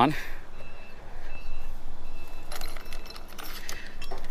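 Bolts in a plastic hardware bag and steel L-brackets clinking as they are handled, in a cluster of short metallic clinks about two and a half seconds in and a few more near the end, over steady background noise with faint, short, high beeps.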